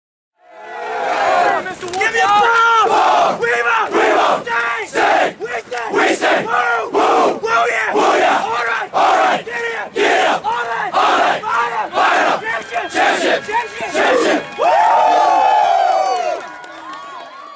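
A large group of voices chanting in unison, shouting in an even rhythm of about one and a half shouts a second, then ending in one long, held yell.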